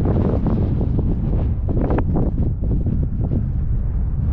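Wind buffeting the camera's microphone, a steady loud low rumble with gusty surges.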